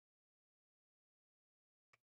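Near silence, with one faint click near the end.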